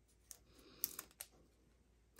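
Faint, scattered clicks and light rustling as strips of cardstock and double-sided Tear & Tape adhesive are handled, a few small ticks about a third of a second in and around one second in.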